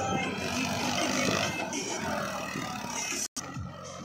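Tractor engine running while driving a soil-loading trolley through its PTO shaft, with music mixed in. The sound breaks off abruptly a little over three seconds in.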